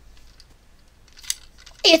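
Handling of a plastic toy blaster as it is picked up: a few faint ticks and one sharper click about a second in. A boy starts speaking near the end.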